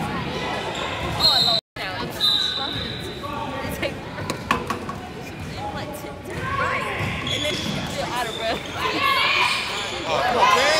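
Basketball game sounds in a gym: a ball bouncing on the hardwood court among players' and spectators' voices, with the echo of a large hall. The sound cuts out completely for a moment just under two seconds in.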